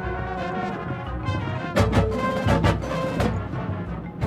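Drum corps brass line playing held chords with the marching percussion and front ensemble, with several loud percussion accents from about halfway through.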